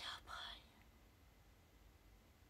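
A brief whisper: two short breathy syllables within the first half-second, then near silence.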